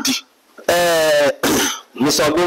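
A man's voice: one held, drawn-out vocal sound of about two thirds of a second, then a short rougher burst just after it.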